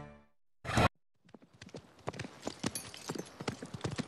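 Theme music dying away at the start, then, from about a second in, horse hooves clip-clopping irregularly on the sand of a riding arena.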